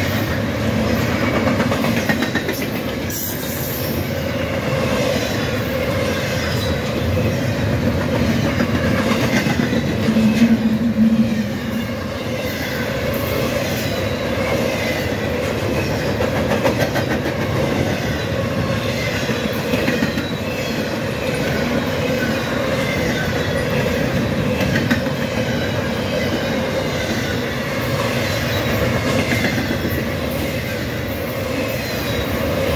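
Double-stack intermodal container train rolling past at speed: a steady noise of steel wheels on rail, with a brief louder stretch about ten seconds in.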